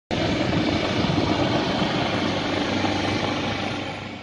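Aircraft flying overhead, most likely a helicopter: a steady engine and rotor noise that fades out near the end.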